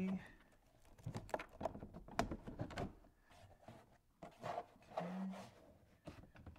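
Scattered light clicks and scrapes of a 2012 Ford F-250's plastic driver's door panel and its wiring being handled, as the wires are pulled through before the panel is pressed into place. The clicks are thickest in the first half.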